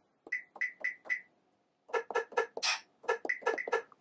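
Hand-percussion samples triggered by finger taps on the Akai MPC Touch's pads. There are four quick, evenly spaced pitched hits, a short pause, then a faster run of about a dozen hits, one of them noisier and splashier.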